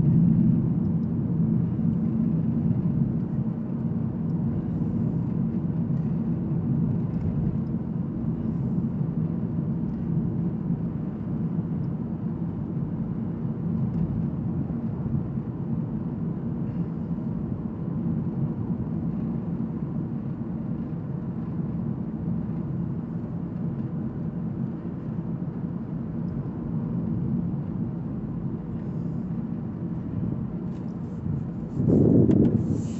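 Steady road and tyre noise heard inside the cabin of a 2014 Toyota Prius V cruising at about 32 mph. It is a low, even noise that eases off slightly over the stretch. The hybrid is running on its battery with the petrol engine off.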